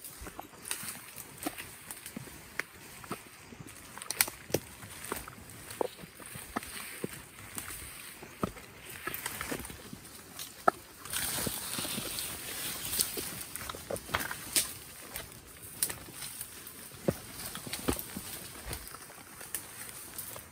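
Footsteps pushing through dense undergrowth: leaves rustling and twigs snapping in irregular sharp cracks, with a louder stretch of brushing through foliage about eleven seconds in.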